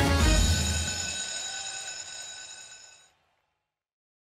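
Closing theme music: a last beat lands, then a held chord rings out and fades over about three seconds before cutting off suddenly.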